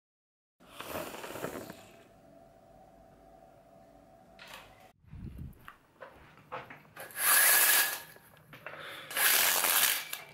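Handling noise from a handheld camera being picked up and moved: scattered rustles, clicks and a low thump, then two loud rushing noises in the last three seconds.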